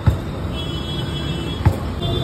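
Steel ladle knocking against a large steel pot as chana chaat is stirred, twice: once just after the start and once near the end. Steady street traffic runs behind it.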